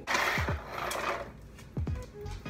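A rustling, handling noise for about the first second as a small purse and its chain strap are handled, over background music with deep falling bass notes.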